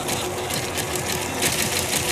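Sound effect of rumbling ground with a dense, rapid crackling clatter of crumbling rock and debris.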